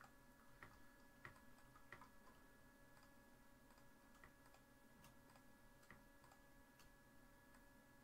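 Near silence with faint, irregular clicks of a computer mouse and keys, over a faint steady hum.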